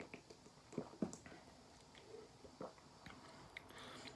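Faint swallowing: a person gulping water from a bottle, a handful of soft, separate gulps with quiet between them.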